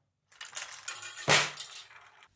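Metal clinking and rattling from the marble drop mechanism and wire funnel of a marble-machine instrument being handled, with one sharp clink about a second and a half in.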